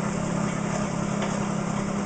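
Exercise bike pedaled hard, spinning a car alternator with its energizer circuit still switched off, so it turns freely without load: a steady mechanical whir.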